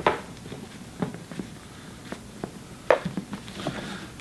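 Handling noise from a Louis Vuitton x Supreme Christopher backpack: a few sharp clicks and knocks from its leather straps and metal buckles as the straps are flipped around, the loudest about three seconds in.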